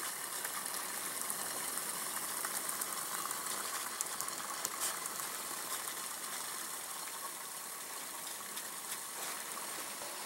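Two cups of water at a boil in a pot over homemade methyl-hydrate alcohol stoves: a steady, fairly quiet bubbling hiss with a few faint ticks.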